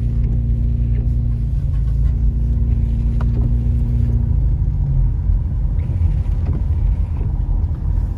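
Car engine hum and tyre noise on a wet road, heard from inside the cabin while driving. The steady engine hum fades about halfway through, leaving a rougher low rumble.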